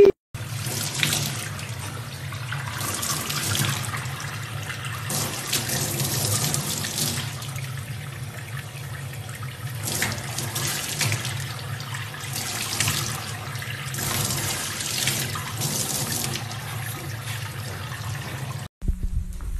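Water from a faucet running into a stainless-steel sink, with louder spells of splashing as a young chimpanzee moves about in the sink.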